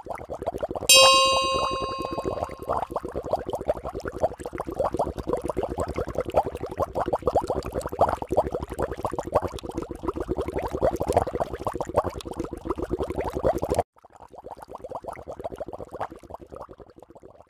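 Water boiling hard in a pot, a dense rapid bubbling that stops abruptly near the end and comes back quieter. About a second in, a bright bell-like ding sound effect rings for a second or two over it.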